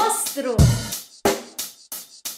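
Drum kit playing short, sharp kick and snare hits in a quick, even rhythm, starting about half a second in: a backing track that beats out the note values of a rhythm-reading exercise.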